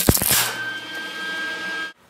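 Wire-feed (MIG) welder arc laying tack welds on steel bed-frame angle iron: a loud crackling burst at first, then a steady buzz with a thin high whine, cutting off abruptly near the end.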